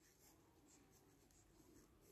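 Very faint scratching of a ballpoint pen writing on paper, close to silence.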